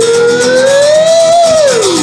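A man's singing voice holds one long note that rises slowly, then slides down near the end, over a strummed acoustic guitar.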